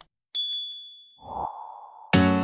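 Subscribe-button animation sound effects: a faint mouse click, then a bright notification-bell ding that rings on for about a second. A soft whoosh follows near the end.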